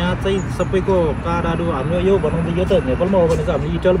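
A man talking, over a low steady background rumble.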